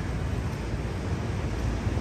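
Steady outdoor city background noise, an even rush with no distinct events.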